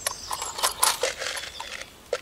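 Quick clicks and rattles of bean seeds dropped through a homemade plastic-tube jab planter into the soil, mostly in the first second, then thinning out.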